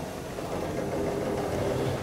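Schindler Eurolift traction elevator car travelling: a steady hum of the drive and ride noise inside the car, growing slightly louder.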